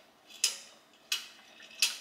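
Chrome wall-mounted makeup mirror being handled and its knob turned: three sharp metallic clicks, about two-thirds of a second apart. The knob turns without switching anything on.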